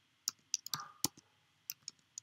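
Computer keyboard keystrokes and mouse clicks: about nine short, sharp clicks at an uneven pace as a web form is filled in.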